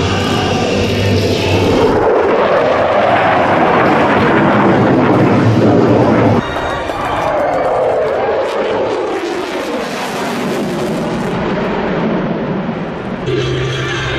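Military fighter jet engines running at high power in a series of spliced airshow passes. About six seconds in, the sound changes abruptly to an F-22 Raptor passing close overhead, its jet noise sweeping down in pitch as it goes by.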